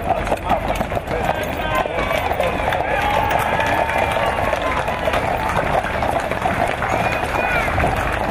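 Hooves of many horses of a mounted escort clattering on the paved road as the column passes, over a crowd's voices.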